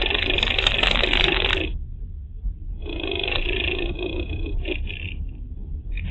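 A car driving slowly on a rough, narrow lane, heard through a dashcam inside the cabin: a steady low rumble with two spells of crunching, scraping noise from the car on the rough surface, separated by a quieter gap of about a second.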